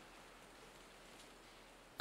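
Near silence: faint steady hiss of room tone between lines of speech.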